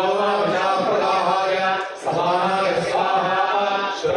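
Male voices chanting Vedic mantras in long, continuous phrases, with a brief pause for breath about halfway through.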